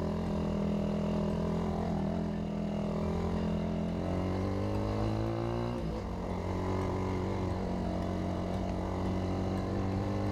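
Hanway Scrambler 250's single-cylinder, air-cooled 250 cc four-stroke engine running while the motorcycle is ridden. The engine note holds steady, climbs from about four seconds in, falls sharply about six seconds in, then holds steady again.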